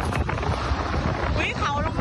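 Strong storm wind buffeting a phone's microphone in a dense, ragged rush of noise. A man's voice calls out briefly near the end.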